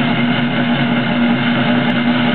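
Loud, steady drum roll, an unbroken dense rattle with a constant low tone underneath, building suspense.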